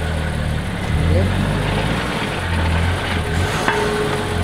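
A flatbed tow truck's engine runs with a low hum that swells and eases every second or so as the car is drawn up onto the bed. A short click comes near the end.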